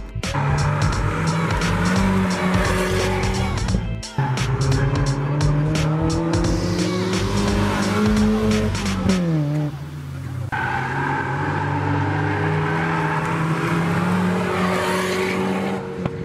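Drift car's engine held at high revs, its note climbing slowly and then dropping sharply about nine seconds in, with tyres squealing as the car slides.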